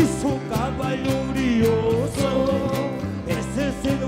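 Live Andean wayliya band music: a sliding, wavering melody line over steady bass notes and a regular beat.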